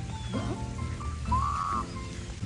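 Rain falling, heard as a steady wash of noise under background music with sustained notes.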